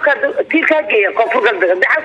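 Only speech: a woman talking in Somali, in an unbroken stream of words.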